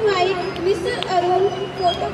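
A young child's high-pitched voice talking in short phrases.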